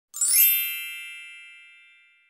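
Logo-intro chime: a bright shimmer swells in the first half-second into one ringing chord of many high tones, which then fades slowly away.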